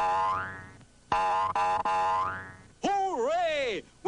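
Cartoon 'boing' sound effect, twice: a springy twang with a rising pitch, the sprung sapling bouncing the hooked catfish. Near the end, a wobbling, voice-like cry.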